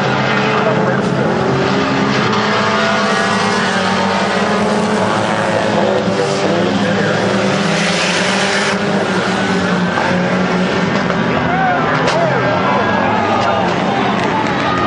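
Several Hornet-class four-cylinder compact race cars running together on a dirt oval, their engines revving up and down as they pass. There is a single sharp knock near the end.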